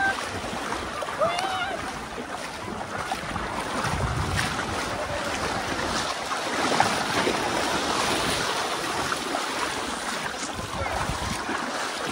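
Small waves washing and sloshing in shallow surf along a rocky shoreline, close to the microphone, with some wind on the microphone. A couple of brief voices are heard near the start.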